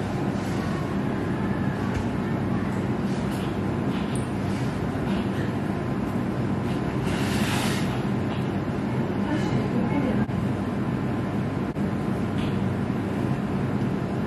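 A steady low mechanical hum and rumble throughout, with a brief hiss about seven and a half seconds in.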